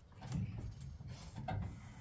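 Soft footsteps and shuffling with a few light knocks, as people move about in the room.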